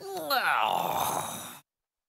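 A tiger's roar used as the production company's logo sting: one drawn-out call sliding down in pitch, lasting about a second and a half and cutting off suddenly.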